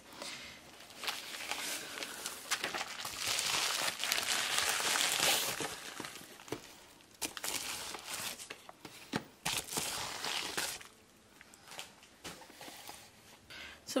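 Plastic poly mailer and paper crinkling and rustling as a package is unpacked by hand, with scattered clicks and light knocks. It is loudest a few seconds in and goes quiet for a couple of seconds near the end.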